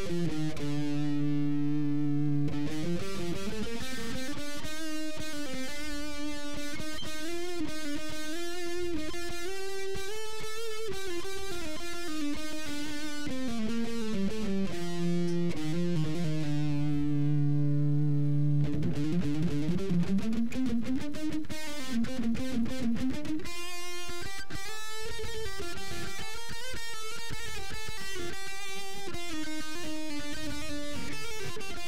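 Electric guitar with a sustaining, slightly overdriven tone playing a slow melodic line through the notes of the A major scale centred on D, demonstrating the Lydian mode. A low note rings out held for a couple of seconds at the start and again about halfway through, with the melody gliding up and down between.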